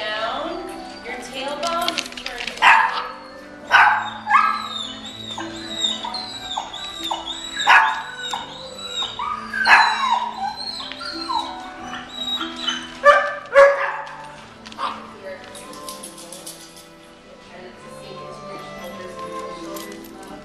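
Dogs barking, a string of sharp barks and yips with the loudest ones between about three and fourteen seconds in, over soft background music.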